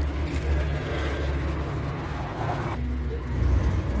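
A steady low rumble, with vegetables being dropped and stirred into a steel cooking pot.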